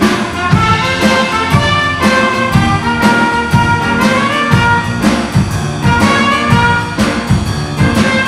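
Live jazz combo playing: a trumpet and flute melody over grand piano, electric bass and drum kit, with drums keeping a steady beat of about two strokes a second.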